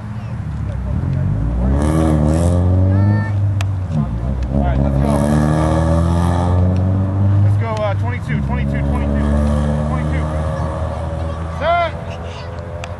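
Players' voices calling out across an open field during a pickup football play, several long drawn-out calls in the middle and a short shout near the end, over a steady low rumble.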